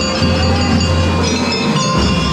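Drum and lyre band playing: many bell-like, mallet-struck notes from bell lyres and keyboard percussion ring over a low sustained note.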